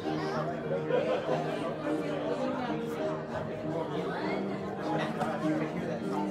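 Many people chatting at once in a large hall, over quiet instrumental music with long held notes.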